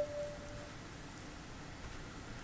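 A single clear, steady tone that fades away within the first second, followed by faint room hiss.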